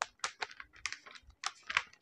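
A stiff cardboard folder swung back and forth as a hand fan, giving light irregular clicks and taps, about five a second.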